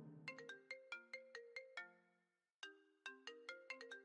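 Faint mobile phone ringtone: a quick melody of short notes, about five a second, played twice with a brief pause between.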